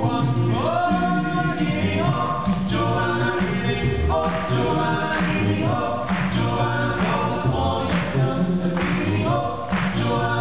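Five-man a cappella vocal ensemble singing into microphones through the stage sound system: a lead voice over close backing harmonies and a sung bass line, with no instruments.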